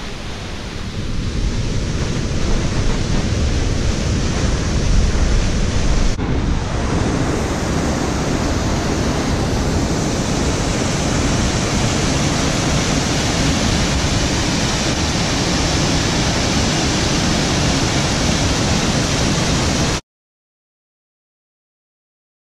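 Waterfall rushing: a loud, steady noise of falling water. It changes abruptly about six seconds in, then stays steady until it cuts off suddenly near the end.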